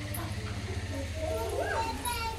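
Young children's voices in a small room: scattered faint calls and chatter, a little louder in the second half, over a steady low hum.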